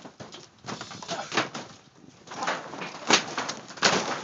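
Trampoline springs creaking and the mat thudding in an irregular run of sharp strikes as wrestlers grapple and bounce on it, loudest about three seconds in and again near the end.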